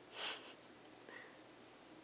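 A single short sniff near the start, followed by a fainter brief sound about a second later.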